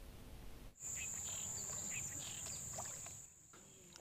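Faint background ambience with a steady high-pitched whine that starts suddenly about a second in and stops shortly before the end, with a few soft scattered sounds underneath.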